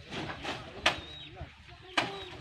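Two sharp knocks about a second apart as bundles of cut sugarcane are dropped onto the load of a cane truck, with people talking in the background.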